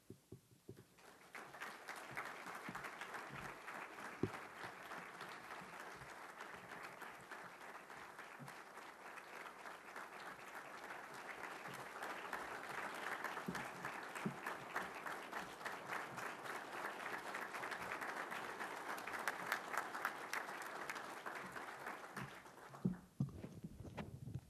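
Audience applauding, starting about a second in, swelling midway and dying away near the end.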